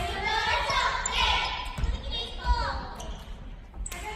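A volleyball struck a few times with sharp slaps as players pass it around, echoing in a large gymnasium, with players' voices calling between hits.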